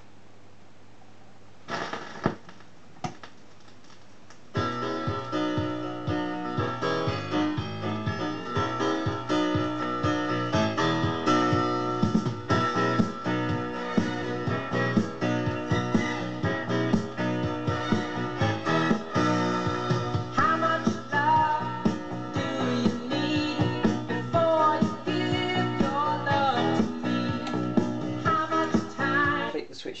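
Bush record player's auto-changer: a low hum with a few clicks and knocks in the first few seconds as the record drops and the tonearm sets down, then a vinyl record plays through the built-in speaker from about four and a half seconds in, music with piano or keyboard.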